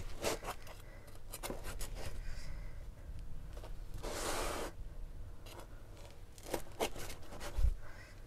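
Chef's knife cutting through the crisp baked crust of a potato-filled börek on a wooden board: crust crackling in small crunches with short scrapes of the blade. There is one longer scrape about four seconds in and a dull knock near the end.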